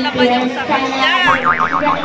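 A cartoon-style 'boing' sound effect, its pitch wobbling rapidly up and down, comes in about halfway through, after a woman's speech.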